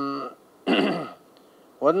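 A man's voice on a microphone: a held hesitation sound trails off, then about a second in comes a short throat clearing before he starts speaking again.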